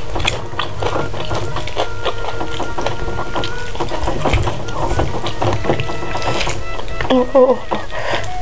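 Close-miked chewing and wet mouth sounds of someone eating chicken and rice by hand, full of small clicks, with fingers working through the food on the plate. A short "uh, uh, uh" comes near the end.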